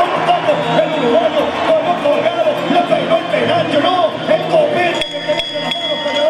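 A man's voice singing a wavering folk-style melody over music and crowd noise, with a sharp knock about five seconds in followed by a brief high ringing.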